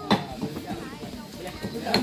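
Several people's voices talking over one another, with no clear words.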